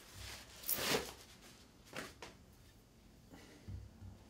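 Handling noise of a new guitar neck being slid out of its white wrapping: a few short, fairly quiet rustles of the wrapping, then a soft bump near the end as the neck meets the cloth-covered table.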